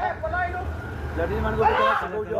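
Men talking over a low, steady engine rumble from a two-wheeler idling close by.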